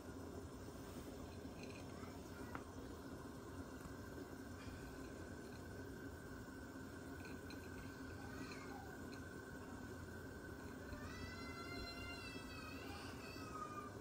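Faint steady background hum. Near the end comes a high, drawn-out, wavering cry lasting about two and a half seconds.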